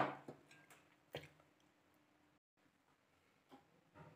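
Near silence: room tone, with a few faint short clicks and knocks in the first second or so.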